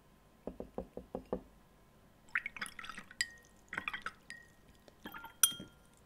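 A watercolour brush being rinsed in a glass jar of water. First comes a quick run of about six soft taps, then swishing with clinks against the glass, each leaving a brief ring. The sharpest clink comes near the end.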